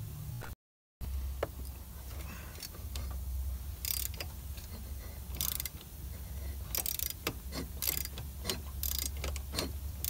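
Socket ratchet clicking in irregular strokes on the power steering pump pulley nut, which won't come loose. A steady low hum runs underneath, and the sound drops out briefly about half a second in.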